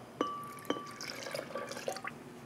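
Milk pouring from a glass measuring jug into a glass blender jar, with a faint splashing. Two light glass clinks in the first second; the first leaves a short ringing tone.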